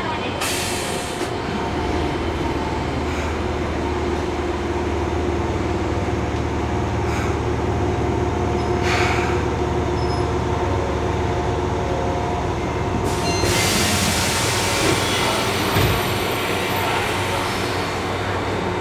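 Fukuoka City Subway 1000N series train running, heard from inside the car: a steady low rumble with a faint hum. From about 13 seconds in, a louder hiss of wheel-and-rail noise joins it.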